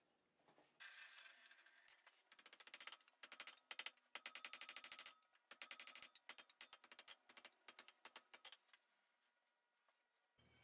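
Hand hammer striking a hot iron bar on an anvil in a rapid run of light blows, several a second, with a metallic ring after the strikes. The split end of the bar is being forged to thin edges for a cleft weld.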